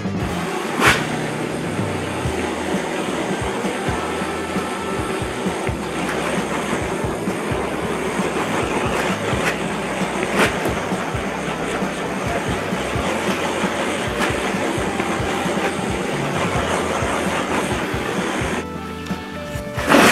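Background music over the steady roar of a handheld gas torch heating the steel body of a homemade wood stove. The roar drops away near the end.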